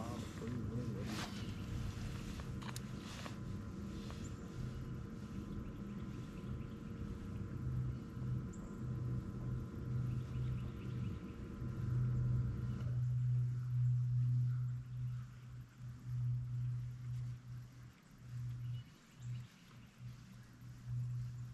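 Steady electric hum of a bow-mounted trolling motor, which cuts off abruptly about two-thirds of the way through. A fluctuating low rumble carries on after it stops.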